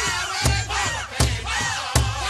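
Powwow big drum struck in a steady beat, three strokes about three-quarters of a second apart, under high, wavering group singing.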